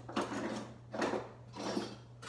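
Kitchen utensils and objects clinking and rattling in three short bouts as a drawer or counter is rummaged through, over a steady low hum.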